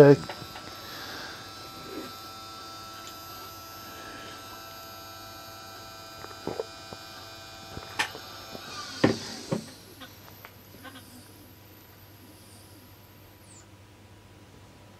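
Motors of a Sky-Watcher GoTo telescope mount whining steadily as it slews to a new target, with a few sharp knocks about eight and nine seconds in. The whine stops about two-thirds of the way through as the mount nears its position.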